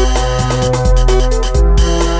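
Electronic breakbeat/electro music: fast, evenly repeating high percussion over a deep sustained bassline whose notes change about once a second, with steady synth tones.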